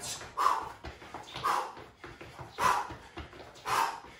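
A man breathing hard through fast side-to-side shuffles: a short, sharp, breathy exhale about once a second, with light sneaker steps on a tile floor underneath.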